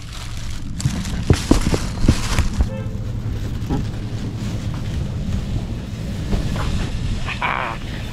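Handling noise: a handful of sharp knocks and thumps in the first few seconds, over a steady low rumble like wind on the microphone.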